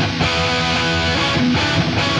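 Rock music: electric guitar playing on its own in a break, with the bass and drums dropped out.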